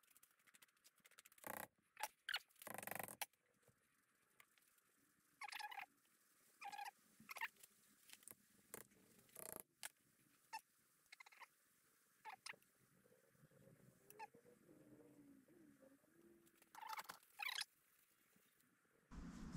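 Faint, scattered clicks and scrapes of metal parts of a steering spindle being handled and worked in a bench vise, with a faint wavering squeak in the last few seconds.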